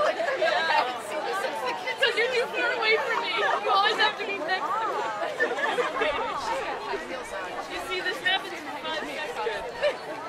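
Several young voices chattering at once, overlapping too much to make out words, with bursts of laughter.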